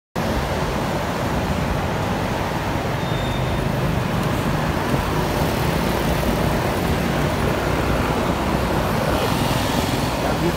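Steady city road traffic heard from a vehicle moving through it: a continuous low engine and tyre rumble with the noise of surrounding cars, vans and motorbikes.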